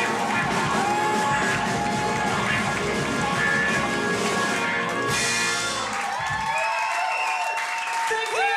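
A live soul band with keyboards, guitar and vocals, recorded from within the audience. About six seconds in the bass and drums drop out, leaving higher held, gliding notes.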